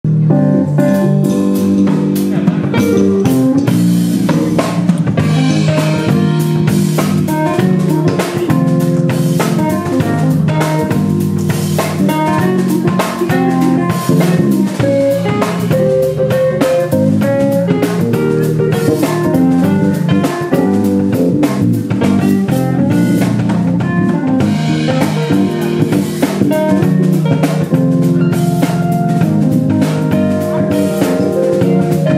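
Live jazz-funk fusion band playing an instrumental: a Nord Stage 3 keyboard playing busy runs of notes over sustained low chords, with a drum kit keeping a steady groove.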